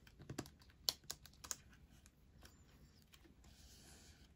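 Faint clicks and taps of plastic as a sleeved photocard is slid into a pocket of a clear nine-pocket binder page and pressed flat, a handful of sharp ticks in the first second and a half, then only faint rustling.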